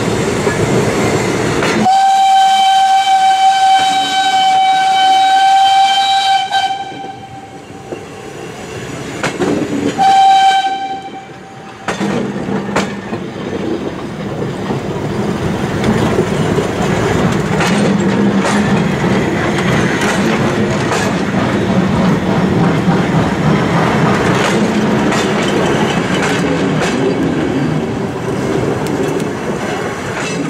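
A train's locomotive whistle sounds one long steady blast of about four seconds, then a short second blast about ten seconds in. Throughout, old passenger carriages roll past close by, their wheels clicking over the rail joints.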